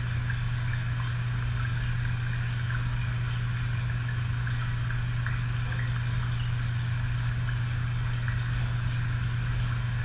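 A steady, unchanging low hum in the room.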